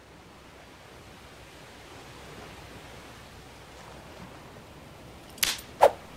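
Faint steady forest ambience fades in. Near the end come two sharp snaps less than half a second apart: a rope snare trap springing shut.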